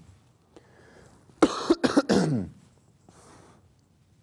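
A man clears his throat with a quick run of short, loud coughs about a second and a half in, with soft breaths before and after.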